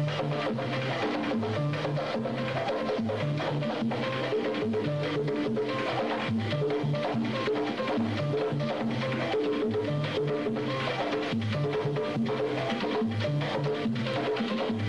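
Cuban dance-band music with drums and hand percussion keeping a steady, even beat over a moving bass line, with no singing.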